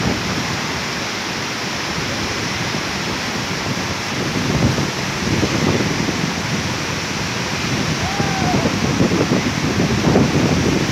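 Steady rushing noise of a tall waterfall plunging into a rocky pool, with wind buffeting the microphone in irregular gusts from about halfway through.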